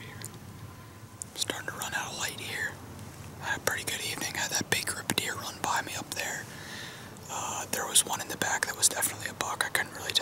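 A man whispering in hushed, unvoiced speech that starts about a second in, with small clicks of the lips and mouth among the words.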